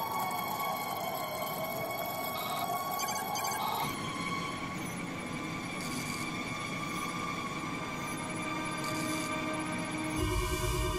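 Tense electronic suspense score: several high tones held steady, with a slow swooping tone over the first four seconds and two brief high hissy swells about six and nine seconds in.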